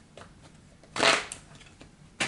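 Tarot deck being shuffled by hand: one short burst of card-on-card noise about a second in, with a few light clicks of the cards around it.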